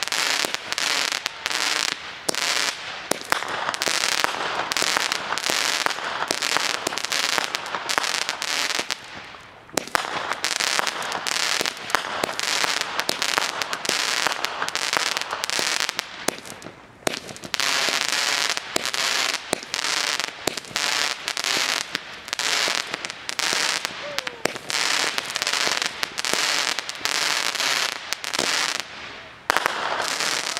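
Aerial fireworks bursting overhead in a dense, rapid crackling and popping. The crackle dips briefly about ten and seventeen seconds in before starting again.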